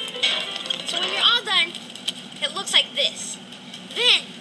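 Background music from a TV soundtrack with short, high, warbling vocal sounds over it, not words, played through a tablet's small speaker with no bass.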